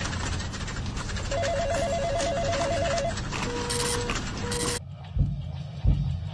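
An electronic telephone rings in a rapid warbling trill for about two seconds over a dense, busy background noise, followed by two steady beeps. Near five seconds in the background cuts off suddenly, leaving low thumps.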